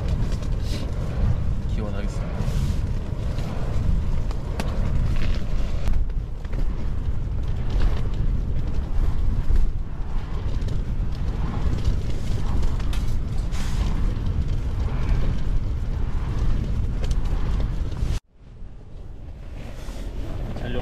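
Strong gusting wind buffeting a tent, a heavy low rumble on the microphone. The sound cuts off suddenly near the end.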